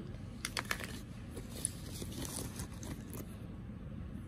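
Small plastic cosmetic tubes and pencils clicking and knocking together as they are handled and rummaged out of a fabric pouch: a quick run of clicks about half a second in, then scattered lighter taps.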